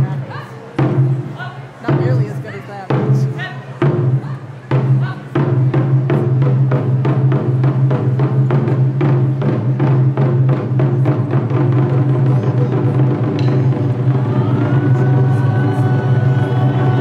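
Japanese taiko drums (chu-daiko) struck with wooden bachi sticks: widely spaced single heavy strikes for about the first five seconds, then a fast, continuous ensemble rhythm. Near the end a held high tone sounds over the drumming.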